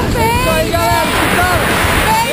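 A woman's high-pitched excited shouting with rising and falling pitch, over steady wind buffeting the microphone under an open parachute.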